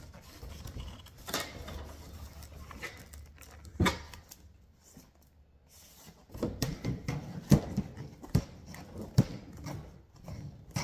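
A cloth rubbing over a plastic tail light lens as it is wiped dry of water, with scattered clicks and knocks from handling the lens. The rubbing gets busier and the knocks sharper in the second half.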